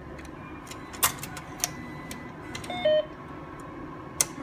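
ATM card reader clicking as a cash card is fed in, with a sharp click about a second in and a few lighter ones, then a short two-note electronic beep from the machine, the second note lower, just before three seconds.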